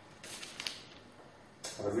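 A brief faint creak during a pause in speech, followed by a man's voice starting again near the end.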